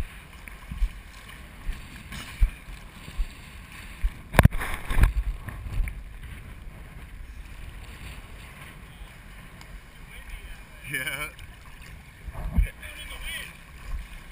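Shallow sea water sloshing and lapping against a waterproof action camera housing held at the surface, giving uneven low knocks, with one sharp knock about four seconds in.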